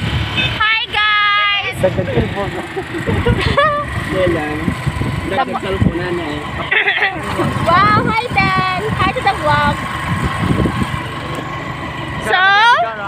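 Several people talking and calling out while riding in an open vehicle, over the steady low rumble of its engine and the road.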